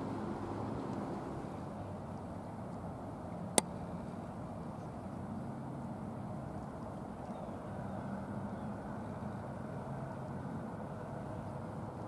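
Steady low outdoor background rumble, with one sharp click about three and a half seconds in.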